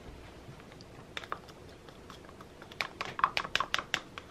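Light clicks and taps: two about a second in, then a quick run of about eight near the end.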